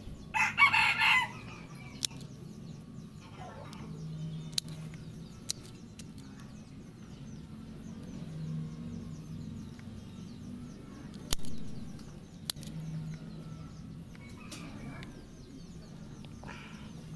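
A chicken calls once, loudly, about half a second in. Then come a few sharp, separate snips, seconds apart, of hand pruning shears cutting the roots and stems of a bonsai stock, over a steady low background hum.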